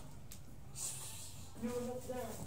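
Clothing fabric rustling as a garment is picked up and shaken out, over a low steady hum. The rustle starts a little under a second in.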